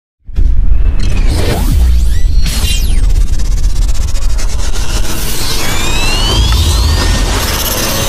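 Animated logo intro sting: loud electronic music with heavy bass booms and whooshes, starting suddenly just after the start, with rising synth sweeps in the second half.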